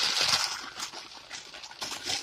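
Tissue paper rustling and crinkling as it is handled, louder in the first half second, then fainter with a few light ticks.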